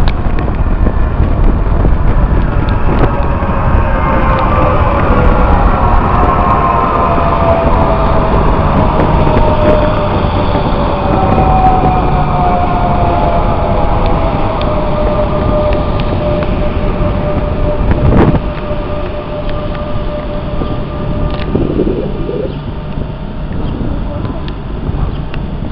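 Passenger train running past close by with a loud, steady rumble, its whining tones sliding slowly down in pitch as it goes by. A single sharp knock comes about three-quarters of the way through, and the rumble is lower after it.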